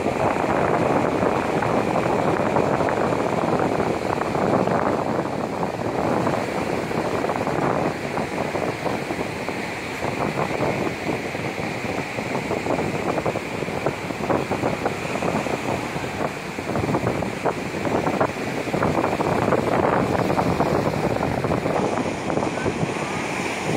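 Ocean surf breaking and washing up the beach: a continuous rushing that rises and falls in level, with wind buffeting the microphone.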